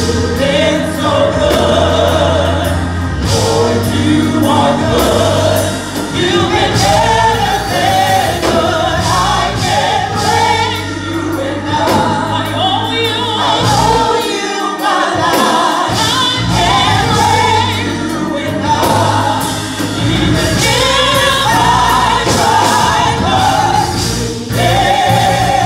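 A gospel praise team singing together, with organ and band accompaniment holding sustained low notes underneath.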